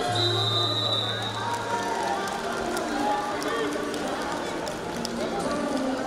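Arena ambience: background music over voices and chatter in a large hall. A steady low hum with a thin high tone runs through the first two seconds.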